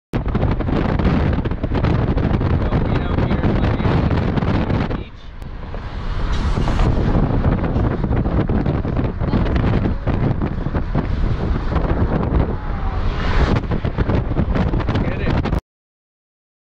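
Wind buffeting the microphone of an action camera held out of a moving car's window: a loud, dense rushing rumble that eases for about a second a little after five seconds in, then cuts off abruptly near the end.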